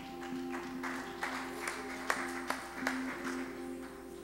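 Soft live worship-band music: a sustained chord held steady, with a run of sharp hits about every half second through the middle.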